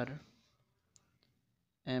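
Pen writing on paper: faint scratching with a sharp tick about a second in and a few lighter ticks after it.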